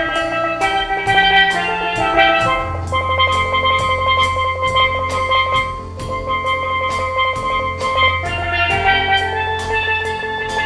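Live band playing with a steady beat: drum kit, electric and bass guitars, and keyboard holding bright chords over a bass line.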